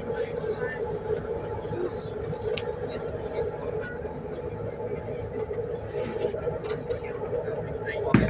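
Steady hum of a train standing at a platform, heard from inside the passenger car, with faint passenger voices in the background.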